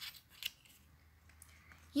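Faint handling of paper and card: a couple of short rustling taps near the start and about half a second in as a paper flap is lifted, then only light rustles.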